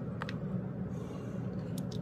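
Faint clicks of small plastic model parts being handled as a dashboard is seated into a 1/25-scale interior tub, one about a quarter second in and another near the end, over a steady low hum.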